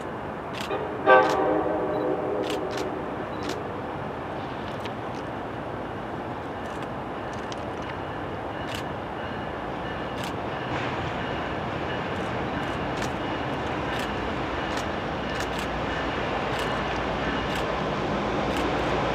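An F-unit diesel locomotive sounds its multi-tone air horn in one blast about a second in, lasting roughly two and a half seconds. The engine and rolling train then run on steadily, growing slowly louder as the locomotive approaches.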